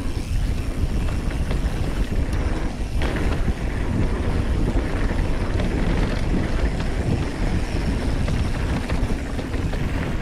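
Mountain bike rolling fast down a packed-dirt trail: a steady rush of wind on the microphone over tyre noise, with the bike rattling over small bumps.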